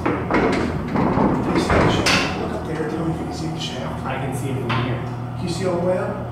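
Elevator equipment in the hoistway: a steady low electrical hum with a series of mechanical clunks and knocks as the car is set going.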